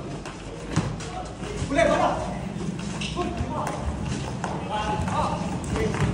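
Children shouting and calling out during a ball game, with scattered thuds of the ball being kicked and bounced and running footsteps on a concrete court.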